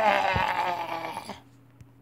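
A teenage boy's long, drawn-out laugh, one wavering voiced sound that fades away after about a second and a half.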